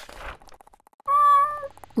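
A short swoosh at the start, then, about a second in, a single cat meow lasting just over half a second, fairly steady in pitch.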